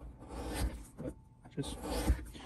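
A hand blade skiving the edge of a leather wallet pocket, a couple of scraping shaves across the leather that thin it down.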